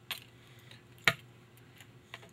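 Small metal parts of a Remington Nylon rifle's trigger group being handled as the disconnector pivot pins are pushed out of the nylon stock: a faint click, then one sharp click about a second in.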